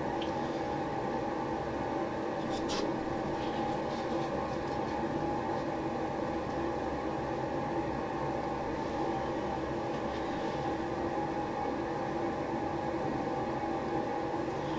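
Steady hum of room machinery, made of several constant tones at an even level, with a couple of faint clicks in the first few seconds. The pouring paint itself is not audible.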